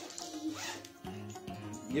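Zipper on a new toy pillow being worked open in a few short rasps, over quiet background music.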